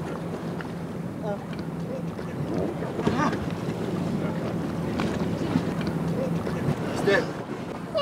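A rigid inflatable boat's engine idles with a steady low hum over wind and water noise, fading out in the last couple of seconds. Short, strained voice sounds come through it a few times, with a few knocks against the hull.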